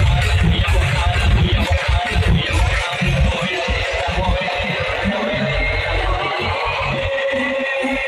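Live electronic dance music played loud over a concert sound system and heard from within the crowd. The heavy bass thins out about three seconds in, leaving held synth tones.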